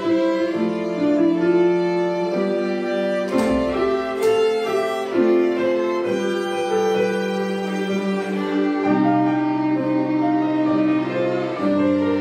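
A children's string ensemble of violins and a cello playing together in several parts, with long bowed notes moving from chord to chord.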